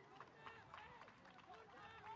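Faint, distant shouts and calls of footballers on the pitch, with a few light sharp knocks.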